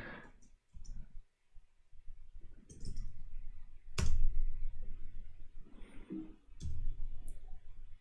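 A few scattered keystrokes on a laptop keyboard as a terminal command is typed, with one sharper click about four seconds in.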